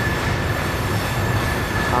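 Open-top freight cars rolling past, a steady rumble of wheels on rail with a continuous high-pitched squeal of wheel flanges grinding through a tight curve.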